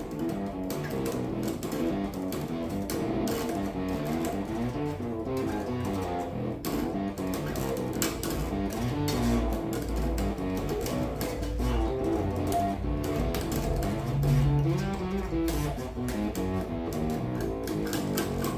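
1990s Golden four-string electric bass with active EMG pickups, played on its bridge pickup: a continuous run of plucked notes. The tone is distorted and weak because the pickups' battery is nearly flat.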